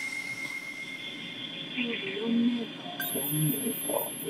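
Steady hiss of equipment inside the Shinkai 6500 submersible's cockpit, with a thin high electronic tone at first. Faint voices come in after about two seconds, and high electronic chirps come in about three seconds in.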